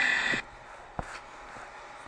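A short quiet gap: faint hiss that drops away early, with a single soft click about a second in.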